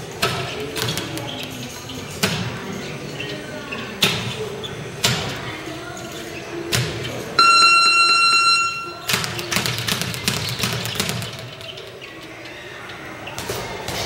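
Leather speed bag punched against its wooden rebound platform in scattered hits and short quick runs rather than a steady roll. About seven seconds in, a steady electronic beep sounds for nearly two seconds and is the loudest thing here. After it, a denser run of hits follows.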